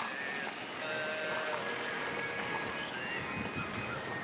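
A pop song playing in the background, with held sung notes, over a steady outdoor hiss.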